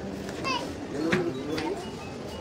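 Background chatter of several people talking, with a small child's high voice calling out briefly about half a second in.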